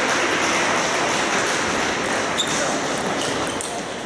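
Table tennis rally: the ball knocking back and forth off bats and table, over a steady background murmur of a large hall.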